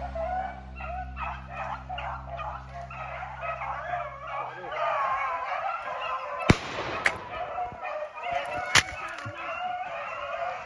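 A pack of rabbit hounds baying in full cry on a rabbit's trail. Three gunshots break in, about six and a half, seven and nearly nine seconds in; the first is the loudest, and the shots miss the rabbit.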